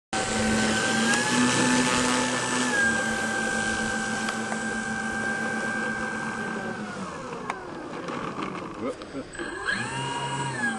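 Electric motors and propellers of a large twin-motor radio-controlled P-38 Lightning model giving a steady high whine. The pitch steps up about a second in and settles back, winds down about seven seconds in, and starts rising again near the end.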